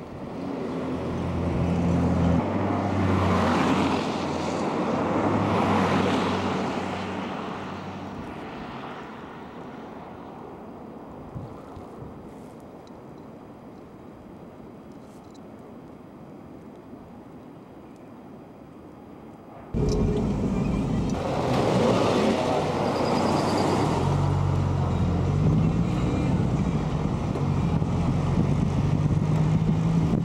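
Road traffic: engines running and vehicles passing, with swells as they go by. Quieter through the middle, then a sudden jump back to loud traffic about two-thirds of the way in.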